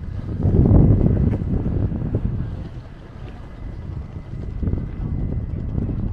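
Wind buffeting the camera's microphone: a low rumble that is strongest about a second in and eases after two or three seconds.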